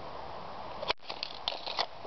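Handling noise as the camera is set down and moved: a sharp click about a second in, followed by a scatter of light taps and rustles over a faint steady background hiss.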